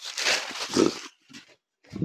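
Silk saree rustling and swishing as it is unfurled and shaken out over a counter, lasting about a second, followed by a couple of soft brief rustles as the cloth settles.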